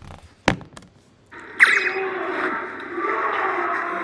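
A single sharp click about half a second in, then, from about a second and a half, the audio of a K-pop variety-show clip starts playing: a dense wash of edited sound with a sharp swoop at its start.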